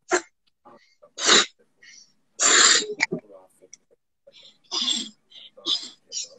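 Forceful breaths blown into a small rubber balloon as a diaphragm-strengthening breath-control exercise: about five short, breathy puffs, a second or so apart.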